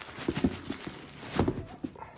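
Nike x sacai VaporWaffle sneakers being handled and turned over by hand: irregular soft knocks of the shoes with light rustling. The loudest knock comes about one and a half seconds in.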